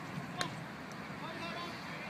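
Background chatter of spectators' voices at a baseball game, with one sharp click about half a second in.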